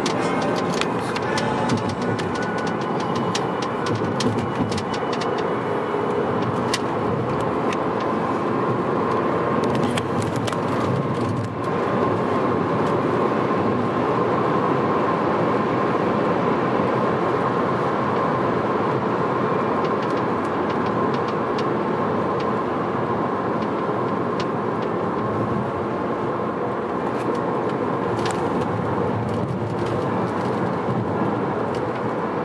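Steady road and engine noise heard inside a moving car's cabin, with occasional light clicks.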